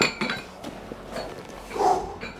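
A dumbbell set down with a sharp metal clink, followed by a few small knocks. Near the end comes a heavy breath blown out after the set.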